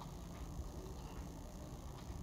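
Quiet room tone: a steady low rumble with a faint click at the start and a couple of fainter ticks.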